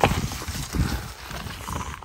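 Loose dry soil and clods being patted and pushed by hand against the side of a buried plastic bucket: a sharp knock at the start, then a run of irregular small knocks and crumbling that fade away.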